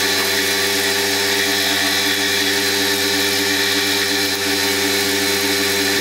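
Ex-treadmill DC motor running steadily, fed through an SCR speed controller and bridge rectifier diode: a constant hum with several held tones over a hiss, with no change in speed.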